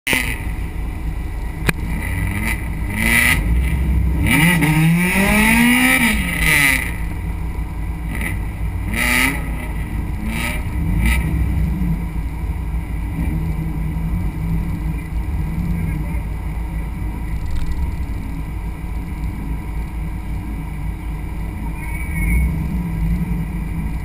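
Drag race car's engine idling with a steady low rumble. It is revved up and back down once, about four to six seconds in.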